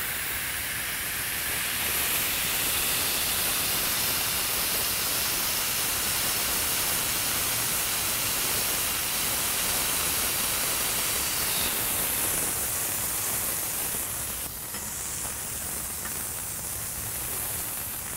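Ground beef patties sizzling on a hot Blackstone flat-top griddle while one is pressed flat under a stainless steel burger smasher, a steady hiss that eases slightly a few seconds before the end.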